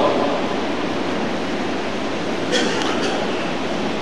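Steady background hiss and hall noise from the sermon's sound system in a pause between phrases, with one short faint sound about two and a half seconds in.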